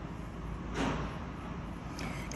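An opal being rubbed by hand on a wet leather pad loaded with cerium oxide slurry, polishing the stone: a quiet scuffing, with one brief soft swish a little under a second in, over a low steady hum.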